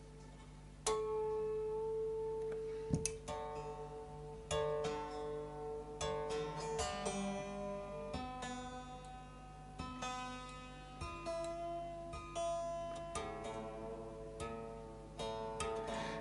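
Fender Duo-Sonic short-scale electric guitar strings plucked one at a time and left to ring while being tuned up to pitch after stretching, starting about a second in with a fresh pluck every second or so at changing pitches.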